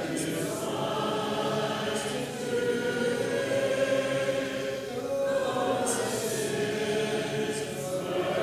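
Congregation singing a hymn a cappella, unaccompanied voices holding long notes that change every second or so.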